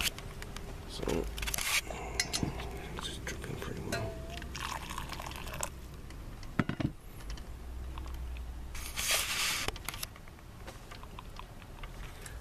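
Hot water poured from a steel saucepan into a paper coffee filter sitting in a ceramic flower pot, in short pours with a longer one near the end, and a few light clinks of the pot.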